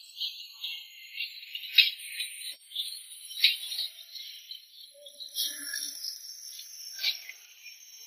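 Food sizzling in a hot steel wok, a steady hiss, with the long metal ladle scraping and clanking against the pan a few times as the cook stir-fries.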